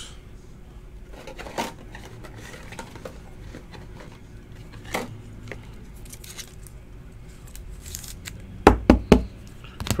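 Trading card being handled in a clear plastic sleeve and rigid holder: soft plastic rustles and scattered light clicks, then a quick cluster of three or four sharp knocks near the end.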